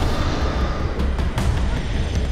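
Tense dramatic soundtrack music: a deep, heavy low rumble with a few sharp hits over it.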